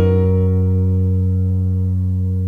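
A live band holding one steady sustained chord on its instruments, a change of chord at the very start and then no movement.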